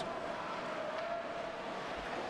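Ice hockey rink ambience during live play: a steady wash of noise with a faint steady hum.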